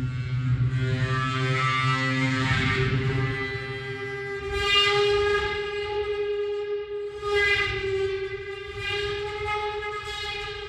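A sustained chord of several held tones. The lowest note drops out about three seconds in, and the upper notes swell louder twice, about five and seven and a half seconds in.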